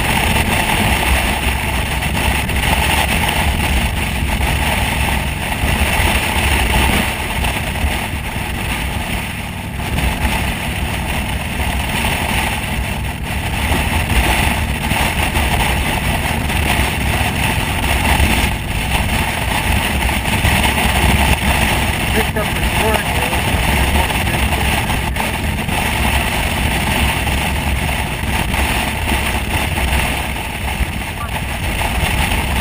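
Motorcycle cruising at highway speed: steady engine and road noise under heavy wind rush on the microphone.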